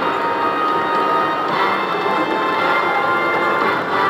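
Hercules video slot machine playing bright, bell-like electronic chimes and music while its bonus win is counted into the credit meter.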